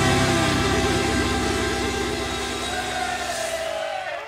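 Rock band finishing a song: electric guitars and bass hold a final ringing chord over rapid drumming. The chord fades and cuts off shortly before the end.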